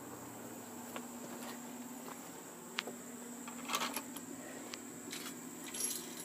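A steady high chorus of insects, crickets among them, over a faint low hum. It is broken by a single click and by short metallic jingles of loose deck screws clinking in a hand, about four seconds in and again near the end.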